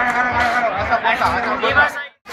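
Several people chatting at once, with a steady low thump about three times a second underneath.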